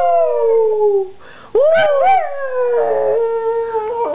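Pug howling: one long howl sliding down in pitch and trailing off about a second in, then a second howl that rises, then sinks slowly and is held to the end.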